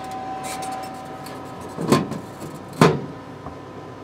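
Steady running hum of a 40 W laser cutter, with two short, sharp noises about a second apart near the middle.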